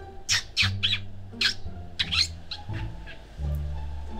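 Several short, high, bird-like chirps in quick succession over background music.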